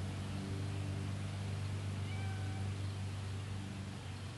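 A short, faint animal call lasting about half a second, about two seconds in, heard over a steady low hum.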